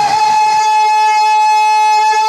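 Male naat reciter holding one long, high, steady sung note through a PA system, the pitch rising into it just before and then barely wavering.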